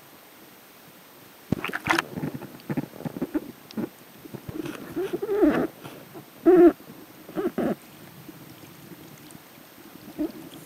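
Scuba diver's regulator breathing heard underwater: an irregular run of bubbly bursts, several with a low pitched note, starting about a second and a half in and stopping about eight seconds in.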